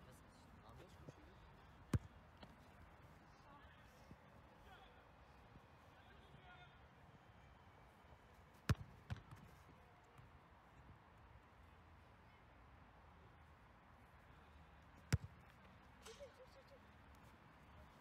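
Three sharp thuds of a football being struck hard, about six or seven seconds apart, the second followed by a smaller knock.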